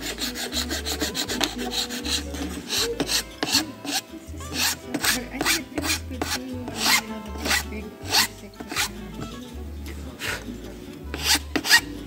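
Metal file rasping across a guitar bridge in quick, repeated back-and-forth strokes as the bridge is reprofiled.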